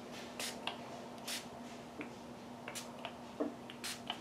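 A few short hissing spritzes from a hand-pumped Distress Oxide spray bottle, about a second apart, misting ink onto paper.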